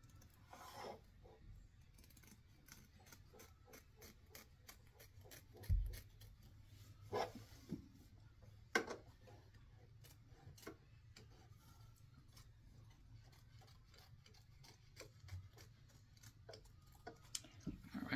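Small embroidery scissors snipping fabric, trimming the excess appliqué fabric close to the stitch line. The cuts come as a run of faint, irregular snips and clicks, with a few louder ones and a soft bump about six seconds in.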